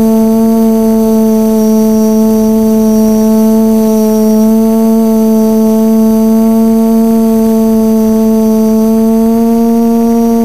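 Quadcopter drone's motors and propellers, heard from its onboard camera as a loud, steady hum that holds an almost constant pitch while it flies.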